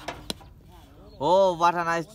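A sharp knock of a cricket bat striking the ball, then, a little over a second in, a man's loud drawn-out shout from the field.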